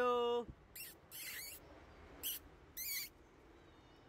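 Kittens giving four short, high-pitched squeaky mews within about three seconds.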